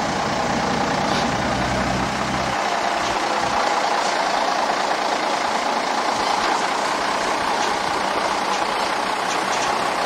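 Diesel engine of a heavy lorry tractor unit running steadily at low revs, with a deeper rumble for the first two and a half seconds that then drops away.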